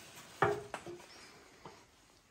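Aluminium stepladder taking someone's weight as she climbs it: a knock with a brief metallic ring about half a second in, a click just after, and a faint tap near the end.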